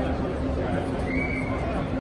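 Busy trade-show hall ambience: indistinct crowd chatter over a steady low hum, with a brief high tone lasting about half a second just after a second in.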